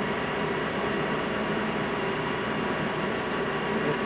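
Small metal lathe running steadily, its motor and spindle giving an even hum with a faint steady whine as it turns a fiberglass circuit-board disc.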